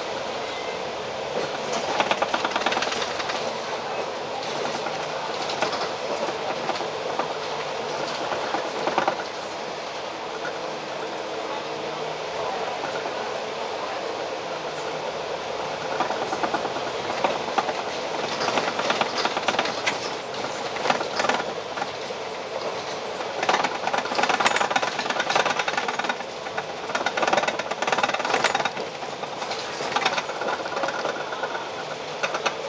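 Cabin noise inside a Volvo Olympian double-decker bus: the engine running under a steady rattle of the body panels and windows. The rattling is lighter around the middle and grows louder and busier from about halfway in.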